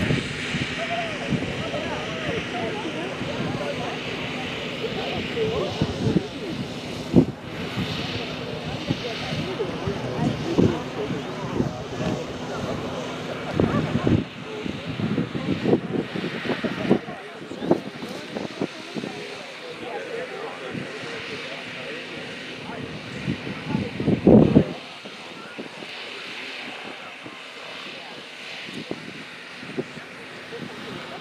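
Small radio-controlled model airplane's motor and propeller, a steady hum from overhead, with gusts and knocks on the microphone that stop about 25 seconds in.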